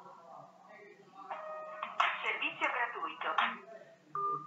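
A smartphone gives a short, steady electronic tone about a second and a half in, then a few seconds of speech follow.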